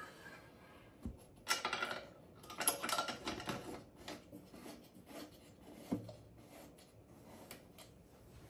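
Metal clattering and clicking as the hinged door of a vintage traffic signal's green section is swung shut and latched. There are two bursts of rattling clicks in the first few seconds, and a single knock before and after them.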